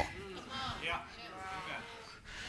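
A faint, drawn-out vocal response from a voice in the congregation, lasting about a second.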